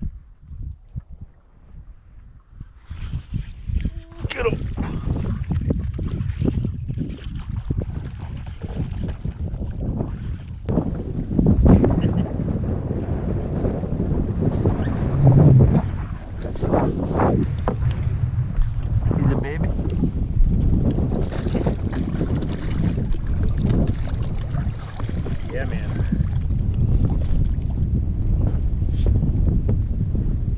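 Wind buffeting the camera microphone, a loud low rumble that sets in about three seconds in and runs on unevenly.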